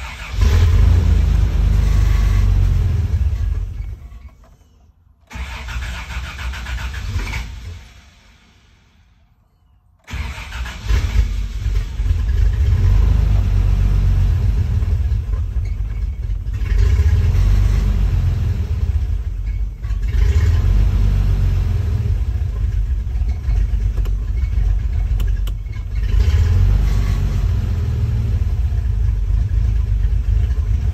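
1988 Toyota FJ62 Land Cruiser's 3F-E straight-six catches and runs, dies about four seconds in, fires again briefly and dies, then starts about ten seconds in and keeps running. Its sound swells and dips every few seconds, running roughly now that the fuel pump has been jumpered on after a fuel-starvation fault.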